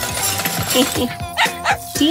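Cartoon dog voice giving a few short barks in the second half, over background music.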